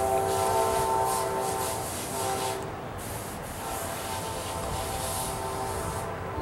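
Train horn sounding in the distance, a chord of several steady tones held in a long blast, fading briefly about two and a half seconds in, then sounding again.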